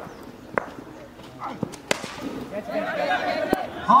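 A cricket bat striking the ball, a sharp crack about two seconds in that sends the ball up high, among a few smaller knocks, with players' and spectators' voices rising toward the end.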